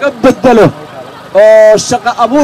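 A man's voice amplified through a handheld microphone, speaking in short phrases, then holding one long, loud vowel about a second and a half in.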